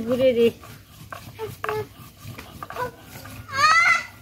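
A brief voice at the very start, then a dog's short, high-pitched whine near the end.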